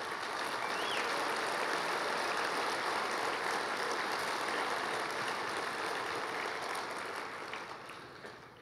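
Large audience applauding, holding steady, then dying away near the end.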